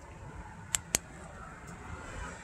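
Two short, sharp clicks about a fifth of a second apart, over a faint steady background.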